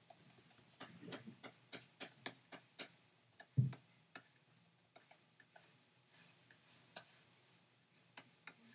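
Faint, irregular light clicks and taps of a stylus on a drawing tablet as brush strokes are laid down, with one low thump about three and a half seconds in, the loudest sound.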